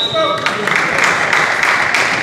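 A referee's whistle blast that cuts off about half a second in, the signal to serve, followed by spectators' voices echoing in the gym and a volleyball being bounced on the hardwood floor.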